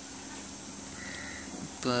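Quiet room tone with a steady low hum, a faint short sound about a second in, and a man's voice beginning at the very end.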